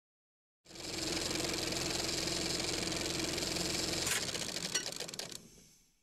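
A small motor running steadily with a constant hum and a fast, fine rattle. It starts abruptly, breaks up into a few clicks about four seconds in, then fades away.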